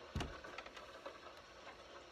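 A single dull thump about a quarter of a second in, followed by a few faint ticks over quiet room noise.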